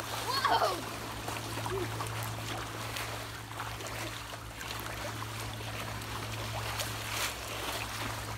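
Pool water splashing and sloshing continuously as two children drive bodyboards through it to whip up waves. A child's brief shout rings out about half a second in, and a steady low hum runs underneath.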